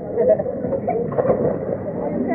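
Indistinct voices of people at a swimming pool, overlapping with no clear words.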